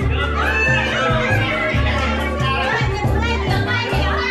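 Music with a steady, repeating bass line, mixed with the lively chatter of a crowd of voices.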